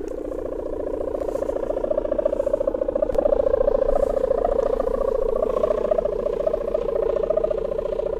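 A kite's hummer droning in the wind: one steady pitched buzzing tone with a slight waver, growing a little louder over the first few seconds.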